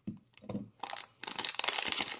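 Foil wrapper of a Yu-Gi-Oh booster pack crinkling as the cards are pulled out of the opened pack, a short rustle about half a second in and then a steady run of crackles.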